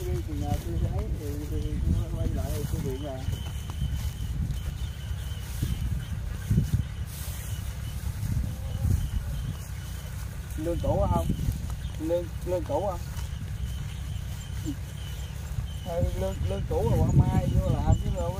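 Brief bits of talk over a steady low rumble of wind and walking noise on the microphone, as people walk through harvested rice stubble.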